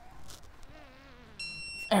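Digital torque wrench giving a steady electronic beep for about half a second near the end, the signal that a frame bracket bolt has reached its set torque. Before it, a faint low strained voice from the mechanic pulling on the wrench.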